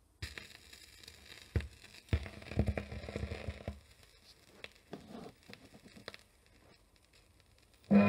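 Stylus riding the lead-in groove of a 1967 lacquer acetate disc: faint surface crackle and hiss with a few sharp pops, two of them loud about one and a half and two seconds in. Music starts loudly right at the end.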